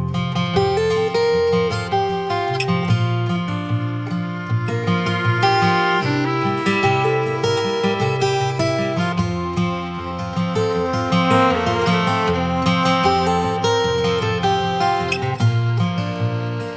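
Instrumental folk-song intro: a steel-string acoustic guitar strummed steadily while a fiddle plays the bowed melody over it, with no singing.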